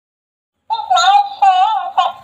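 Dancing cactus toy singing in a high-pitched electronic voice, starting about two-thirds of a second in after a brief silence, its pitch wavering up and down.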